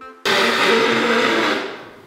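A person blowing a congested nose into a tissue: one long, loud blow of about a second that tails off. He is sick with a cold.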